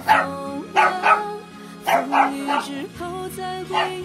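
Caged puppies yipping and barking in about seven short bursts over background music.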